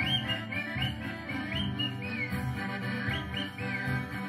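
Background music with a run of short bird chirps over it: a series of whistled notes, each gliding up and down.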